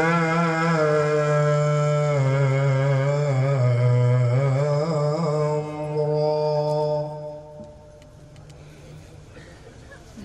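A man's voice reciting the Qur'an in melodic tajweed style into a microphone, drawing out long, ornamented notes whose pitch wavers and bends. The phrase ends about seven and a half seconds in.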